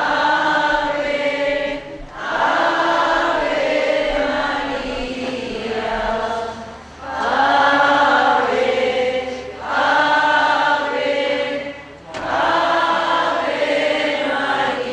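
A group of voices singing a slow hymn, in phrases of a few seconds separated by brief pauses for breath.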